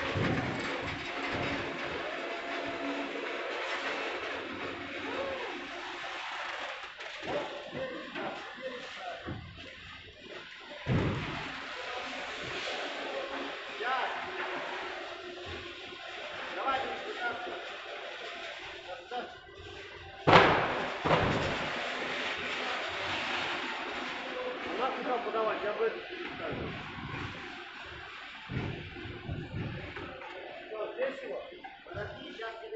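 Busy warehouse background of indistinct voices and music, with a thump about eleven seconds in and a loud sharp bang about twenty seconds in, the loudest sound here.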